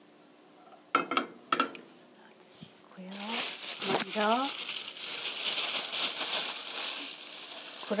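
Two sharp knocks as a frying pan is set on the gas stove's grate, then from about three seconds a steady sizzling hiss of grapeseed oil heating in the pan.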